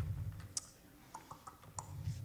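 Faint handling noise on a handheld microphone: a low rumble that fades out, then a few scattered soft clicks.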